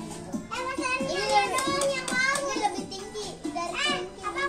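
Several young children's voices chattering and calling out in a small room, over background music.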